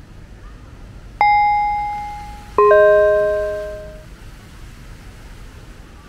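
A two-note ding-dong chime, a higher note about a second in, then a lower note about a second and a half later, each ringing out and fading. Underneath is a steady low background rumble.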